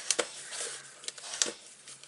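Bone folder rubbed firmly over a folded cardstock-and-paper square to burnish its creases: a dry scratchy rubbing with a couple of short sharp clicks, one just after the start and one about a second and a half in.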